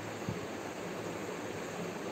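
Steady hiss of background noise, with a few faint low thumps.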